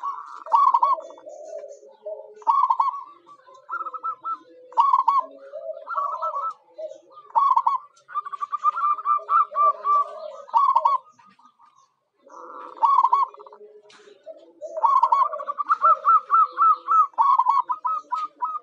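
Zebra dove (perkutut) cooing: repeated phrases of rapid staccato trilled notes mixed with lower coos, each phrase a second or two long, with a brief pause about two-thirds of the way through.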